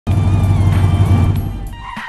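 Race-car engine sound effect with music, starting suddenly at full loudness and fading away in the second half.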